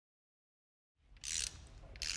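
Silence for about a second, then a short burst of mechanical noise from a wrench on the crankshaft snout turning over an LML Duramax V8 short block on an engine stand. This is a check that nothing in the freshly installed rotating assembly is binding.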